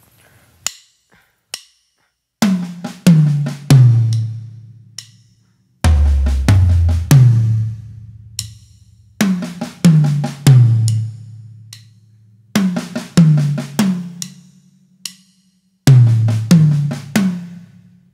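Drum kit fill played five times in short phrases, a right-left-left-right-left-left-right sticking with the accented right-hand strokes on the toms, stepping down from high tom to low. Lighter strokes fall between the tom accents, and one pass drops to the deeper toms.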